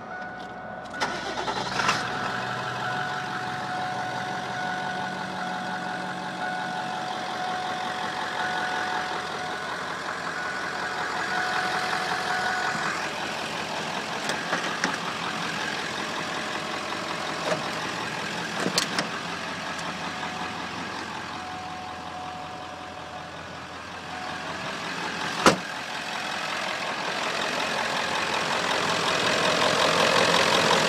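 Ford 7.3-litre Power Stroke turbo-diesel V8 starting and then idling steadily with a faint high whine. A single sharp knock comes about 25 seconds in, and the engine grows louder near the end as the microphone moves to the open engine bay.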